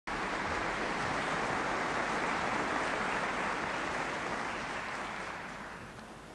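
Audience applause, steady and then dying away near the end, on an old 1957 television broadcast recording.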